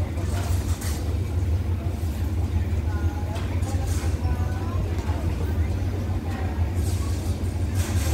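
Hitachi diesel-electric locomotive idling with the train standing at the station: a steady low rumble, with people's voices on the platform over it.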